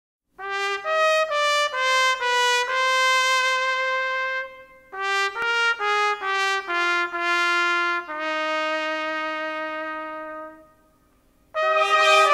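Trumpet melody in two phrases of separate notes, each ending on a long held note that fades away. After a short pause near the end, brass music starts up again.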